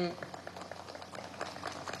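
A pause in a man's speech at a microphone: faint crackling background noise with a low steady hum underneath, the tail of his last word just at the start.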